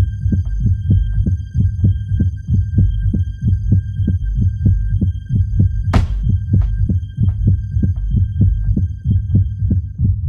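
Bass-heavy minimal tech house groove from a DJ mix: a steady, fast pulse of kick drum and ticking percussion under thin, sustained high tones. A single bright, cymbal-like hit comes about six seconds in.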